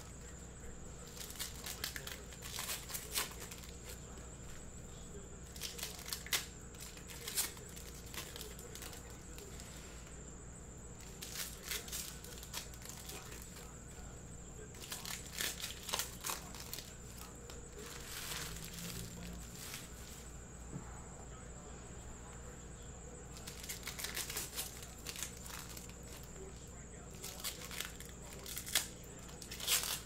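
Foil wrappers of trading card packs being torn open and crinkled, in scattered bursts of short crackling sounds, with cards being handled in between.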